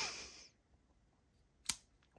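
A single sharp click about one and a half seconds in as the Böker Plus Kaizen's slim S35VN blade is flipped open and snaps into its liner lock.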